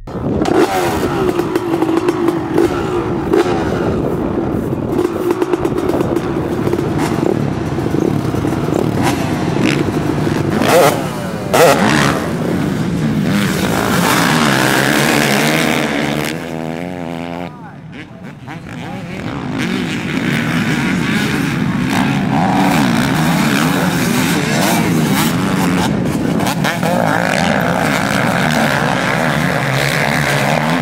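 Two-stroke motocross bikes, a Honda CR250 among them, racing past, their engines revving up and down as the riders throttle and shift. The sound drops off briefly about two-thirds of the way through, then the engines pick up again.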